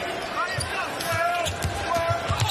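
Basketball dribbled on a hardwood court, thumping several times over the steady noise of an arena crowd.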